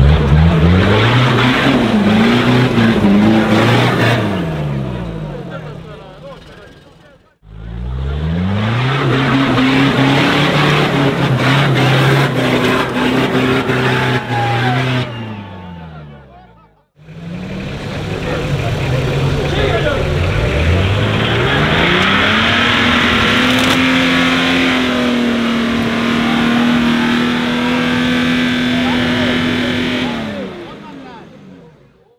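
Off-road 4x4 engines revving hard in three separate runs, split by two abrupt cuts: in the first two the revs climb, waver and die away, and in the last they climb and hold steady and high. Spectators' voices run underneath.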